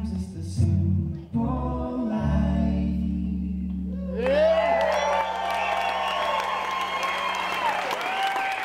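Male voice singing over an electric bass, the song closing on a held low bass note. About four seconds in, the audience breaks into applause with cheering and whoops.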